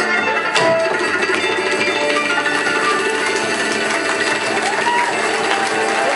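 Live acoustic band playing an instrumental passage: an acoustic guitar strummed together with plucked-string instruments, dense and steady, in the closing bars of a song.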